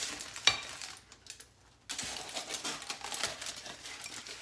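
A single sharp clink about half a second in. From about two seconds in comes a steady crackling rustle of aluminium foil being spread and smoothed on a countertop.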